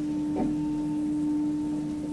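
Elevator car travelling in its shaft, the drive giving a steady low hum, with a brief knock about half a second in.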